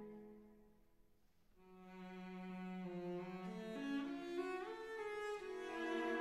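Background music of slow bowed strings. A held note fades away over the first second or so, then a new phrase enters and climbs in steps, with sliding notes near the middle.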